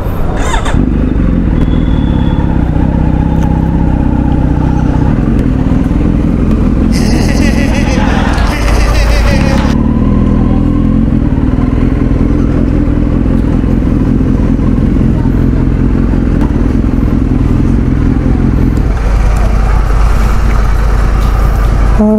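Kawasaki Z900's inline-four engine idling steadily, with a brief burst of hiss about seven seconds in.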